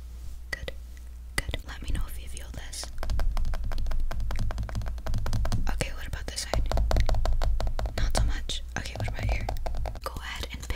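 A woman whispering close to the microphone, with a dense patter of small, rapid clicks from about a second and a half in.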